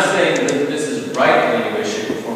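A man speaking: lecture speech.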